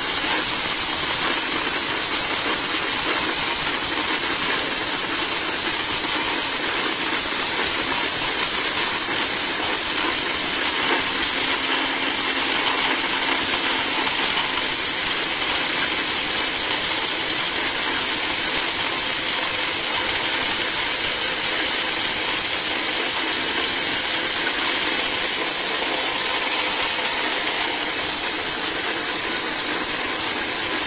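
ORPAT mixer grinder running at full speed, its motor a steady high whir with a hissing rattle as dry cinnamon bark is ground to powder in the large stainless-steel jar.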